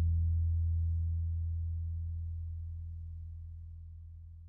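Background music ending on a low held bass note that fades out steadily.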